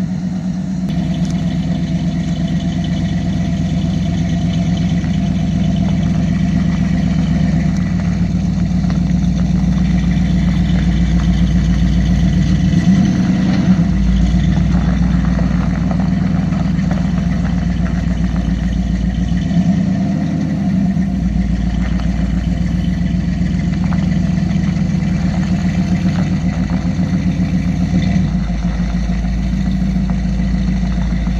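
1979 Chevrolet pickup's 350 V8, fitted with a Comp Cams camshaft and full-length tube headers, idling steadily through its exhaust, with a couple of brief shifts in engine speed partway through.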